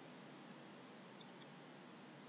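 Near silence: a faint, steady hiss of recording background noise.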